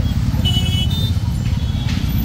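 Low, steady rumble of a horse-drawn cart rolling through busy street traffic, with a few short high-pitched beeps about half a second in and again near the end.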